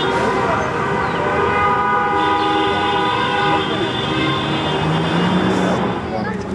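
Car horns in street traffic, sounding in long, overlapping held blasts over the noise of traffic, with a higher-pitched horn joining about two seconds in.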